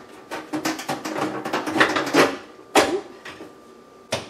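Clicks and knocks of a bread pan being set and locked into a bread machine and its lid handled, a quick run of small clatters in the first half and one louder knock a little before three seconds in.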